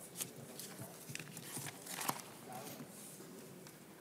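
Faint murmur of voices in a large room, with scattered small clicks and knocks.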